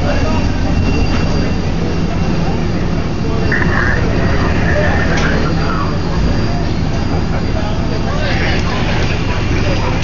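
Fire engine's diesel engine running steadily, a continuous low drone, with firefighters' voices in the background and a short high tone about four seconds in.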